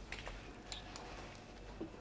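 Faint, scattered light clicks and taps, a handful of them, from footsteps and studded costume armour as people move about a room, over a low steady hum.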